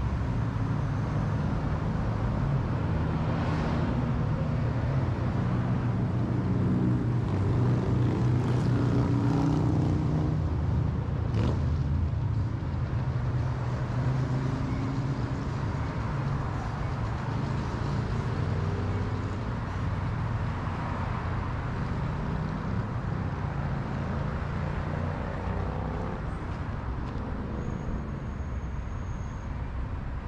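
Passing road traffic: a continuous rumble of car engines and tyres that swells to its loudest about a third of the way in and eases off towards the end. A single sharp click comes near the middle.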